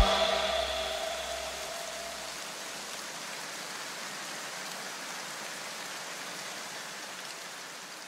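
An electronic music track cuts off and its last notes die away over about two seconds. A faint, steady hiss follows and slowly fades.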